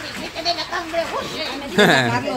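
Several people's voices talking over each other, with a loud quavering cry near the end.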